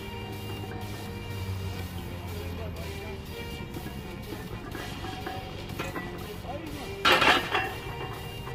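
Background music, then about seven seconds in a loaded 140 kg barbell is set back onto a steel squat rack: one loud metallic clank with a brief rattle of bar and plates.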